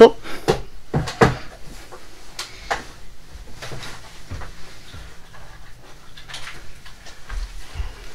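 A few light knocks and clatters in the first three seconds, then faint rustling and handling noise, as someone rummages off-camera, with the sound of a cupboard or drawer.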